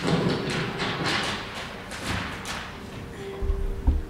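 Large sheets of flipchart paper rustling and crackling as they are flipped over the top of the easel, followed near the end by a few low thumps.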